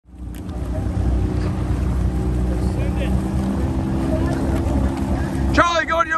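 A coaching launch's outboard motor running steadily underway, a low droning hum with water and wind noise, fading in at the start. A man's voice starts calling out loudly near the end.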